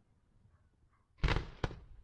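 Two aerial fireworks shells bursting with loud bangs about half a second apart, a little over a second in; the first has a longer rumbling tail.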